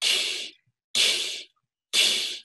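A man's voiceless hiss blown through the tongue held in the 'ee' position, like a whispered 'ee', repeated about once a second with each hiss lasting about half a second. It is a demonstration of the high resonance of an 'ee' vowel, and the hiss itself sounds like an E.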